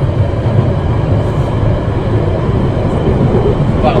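Subway train running, heard from inside the carriage as a loud, steady rumble of wheels and track.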